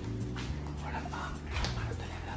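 A pet dog whimpering with a few short whines, over a steady low hum.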